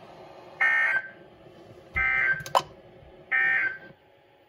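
NOAA Weather Radio SAME end-of-message data bursts through a weather radio's speaker: three short, buzzy digital bursts a little over a second apart, marking the end of the Required Weekly Test broadcast. A sharp click comes during the second burst.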